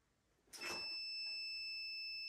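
Solar inverter/charge controller giving one long, steady, high-pitched electronic beep, starting about half a second in, as it comes on with the solar panels connected.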